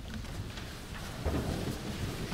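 Rustling and soft low knocks of people shifting in wooden stalls as they kneel, with a couple of dull thumps past the middle.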